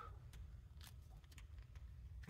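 Faint creaking: a few soft, scattered clicks from the plastic body and removable back of a BlindShell Classic 2 phone as it is flexed in the hands.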